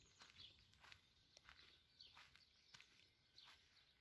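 Near silence, with faint soft footsteps on grass at a walking pace.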